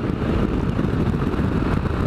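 Motorcycle riding at a steady cruising speed: the engine running, with wind rushing over the microphone.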